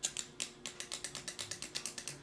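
Quick run of light plastic clicks, about eight a second, from computer input such as a scroll wheel or keys.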